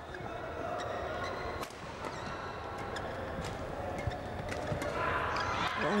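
Badminton doubles rally: a string of sharp racket strikes on the shuttlecock, irregularly spaced, over steady arena crowd noise. The crowd swells near the end as a hard shot is saved.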